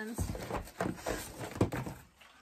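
Packaging rustling and clattering as packs of press-on nails are handled and pulled out of a cardboard box, with a sharper knock near the end.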